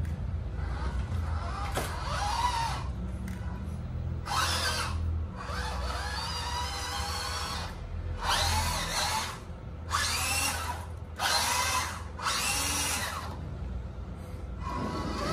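Electric motor and gearbox of an MN82 Pro RC crawler truck whining in about six short bursts of throttle, the pitch rising as each burst spins up.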